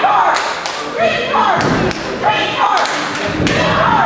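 Several heavy thuds of wrestlers' strikes and bodies hitting the ring in a gym hall, mixed with shouting voices.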